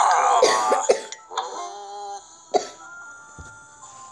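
A child coughing in a short burst during the first second, over soft app background music of sustained tones. A sharp click about two and a half seconds in.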